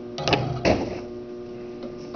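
A string breaking under a slow pull and the one-kilogram hooked lab mass dropping, with two sudden knocks less than half a second apart as it lands. A steady mains hum runs underneath.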